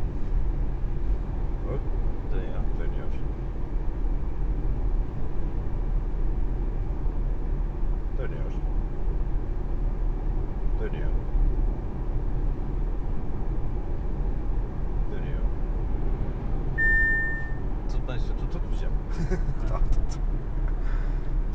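Steady cabin noise of an Audi A5 cruising at motorway speed: low road and tyre rumble with the engine's hum underneath. A single short electronic chime sounds about seventeen seconds in.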